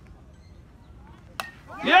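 A baseball bat hitting a pitched ball: a single sharp crack about one and a half seconds in, followed just before the end by a loud shout of "yeah".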